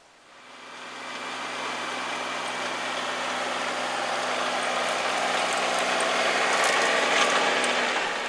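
Compact tractor engine running steadily while pulling a disc harrow, with the harrow's metal rattling as it cuts the soil. The sound fades in and grows louder as the tractor comes close.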